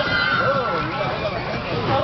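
Sea lions calling in wavering, whinny-like cries over the chatter of people.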